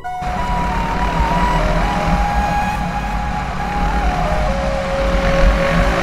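KTM 690 Enduro's single-cylinder engine running as the bike is ridden, heard with wind noise on a helmet-mounted camera. It cuts in just after the start, with music playing underneath.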